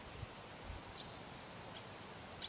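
Faint outdoor wetland ambience, a steady low hiss with a few short, faint high chirps. The welling spring is not audible.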